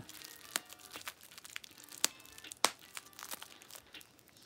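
Bubble wrap being handled and popped: quiet plastic crinkling with scattered small crackles and three sharper pops, about half a second, two seconds and two and a half seconds in.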